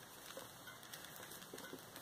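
Very quiet room with a few faint ticks and soft rustles as a doll and its leggings are handled.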